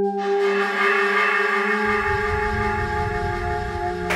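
Electronic intro music: a sustained synthesizer chord of many steady held tones swells in. A low rumbling bass layer joins about two seconds in.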